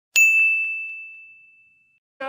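A single bright metallic ding, struck sharply at the start and then ringing on one high tone that fades away over nearly two seconds.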